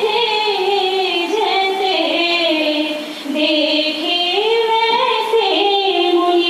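A high voice singing a Hindi devotional song (bhakti geet) in long, gliding melodic phrases, with a short breath about three seconds in.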